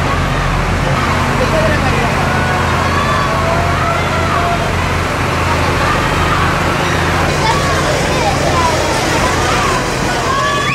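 Steady low engine hum of a tractor pulling a parade float, under a crowd of voices with many short calls and shouts rising and falling in pitch.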